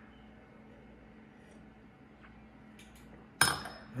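Quiet room tone, then about three and a half seconds in a wine glass is set down with a short clink that rings briefly.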